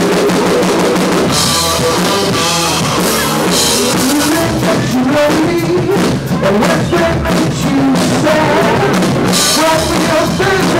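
Live rock band playing loudly: electric guitars, bass and drum kit. The full band comes in at the start, after a passage led by the drums.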